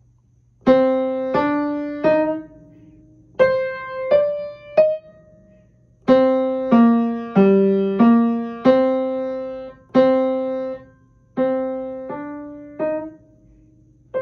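Acoustic upright piano played slowly with both hands: single struck notes in short phrases of three to six notes, each note ringing and fading, with brief pauses between phrases. It is a simple beginner piece.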